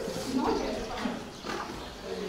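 Indistinct voices of people talking, louder in the first second and fading toward the end.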